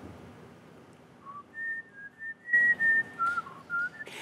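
A person whistling a short tune softly: about ten short notes stepping up and down, starting about a second in.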